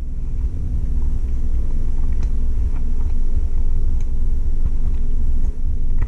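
A loud, low rumbling noise over a steady low hum, with a few faint clicks, in a kitchen where a hard gummy candy is being chewed.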